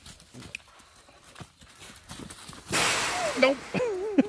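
Goats being led on a leash at a pasture gate: light scattered steps and shuffling, then about three seconds in a sudden loud rush of noise lasting about half a second.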